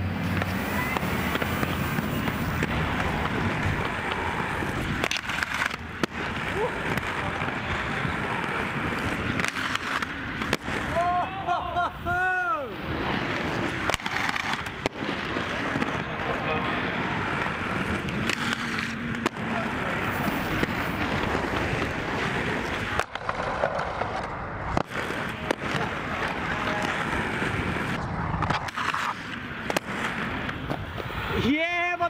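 Inline skate wheels rolling over concrete paving, a steady rough rolling noise broken by frequent sharp knocks and clacks from bumps, joints and landings.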